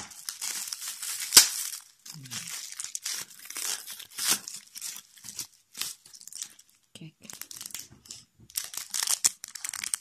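Bubble wrap and plastic packaging crinkling and tearing as a small package is unwrapped by hand, in irregular rustling bursts. There is one sharp snap about a second and a half in.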